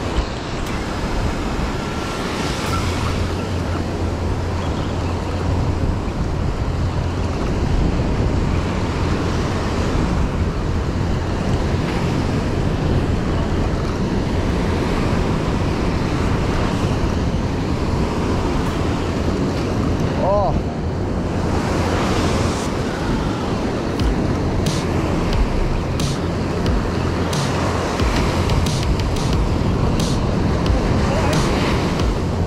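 Surf breaking and washing up a beach, with wind buffeting the microphone and a steady low rumble. A few sharp clicks come near the end.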